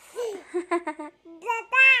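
A toddler's voice in short, high-pitched sing-song syllables, ending in a louder, longer high note near the end.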